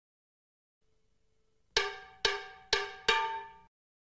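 A short percussion sting of four struck, ringing metallic notes, about half a second apart. Each note dies away, and the last is cut off abruptly.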